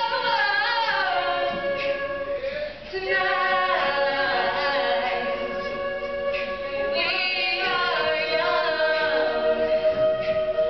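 Women's a cappella group singing live in harmony without instruments, holding sustained chords while voices glide over them, with a brief dip in loudness about three seconds in.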